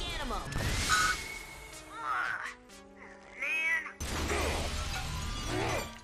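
Cartoon soundtrack: a short line of dialogue, then dramatic score with a loud crash-like sound effect about a second in, a held chord, and voice-like cries.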